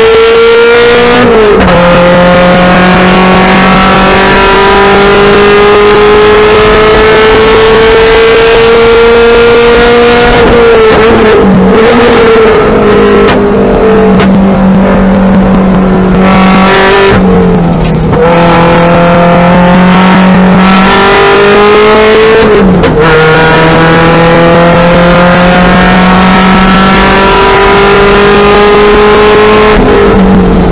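Onboard engine sound of a track car driven hard: the engine note climbs steadily with the revs for several seconds at a time, then drops sharply at each lift, braking zone or upshift, several times over.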